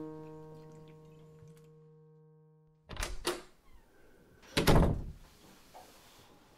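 A single sustained musical note with overtones rings out and fades, then cuts off abruptly about three seconds in. Two quick thuds follow, and about a second and a half later a louder, heavier thud.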